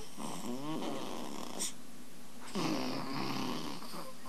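Strange voice- or animal-like sounds in an experimental music track: a few short gliding calls, a click, then a longer rasping, snore-like sound about two and a half seconds in.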